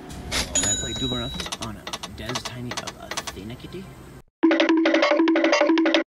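Electronic slot machine sounds over busy casino noise, with a few clicks and brief thin beeps. After a short dropout, a much louder slot machine tune plays, repeating a figure of three held notes.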